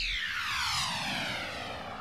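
A descending sweep sound effect closing a radio station jingle: several tones slide down together from high to middle pitch and slowly fade out.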